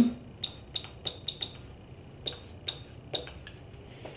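About ten light, irregular clicks and taps from writing on a digital whiteboard, with pauses between them.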